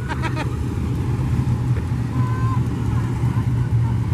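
Winged sprint car engines droning steadily as a pack of cars circles the dirt oval together.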